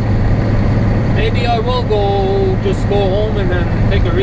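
Inside a semi truck's cab at highway speed: the steady drone of the diesel engine and road noise, with a voice heard partway through.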